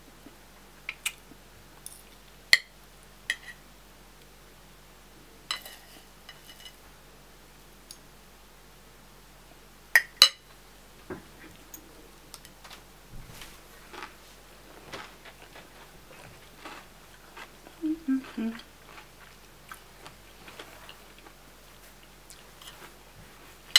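Metal spoon and fork clinking and scraping against a plate while eating. There are a few sharp clinks in the first half, the loudest about two and a half and ten seconds in, then softer chewing and mouth sounds.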